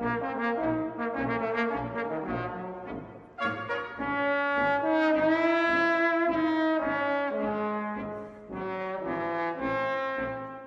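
Brass ensemble playing, with trombones to the fore: a run of short, separate notes, a brief break a little after three seconds, then a long held chord, followed by shorter phrases.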